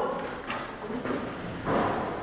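Footsteps on a hard school floor as people walk away, a few uneven steps with a louder scuff or thump near the end.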